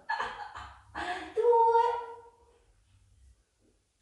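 A woman's voice: a short utterance, then a drawn-out vowel held on one steady pitch for about a second that fades out midway through. After that it is quiet.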